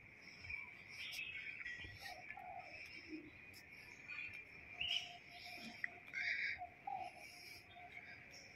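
Faint garden ambience: scattered short bird chirps and calls, a few louder ones a little past the middle, over a steady high-pitched hum.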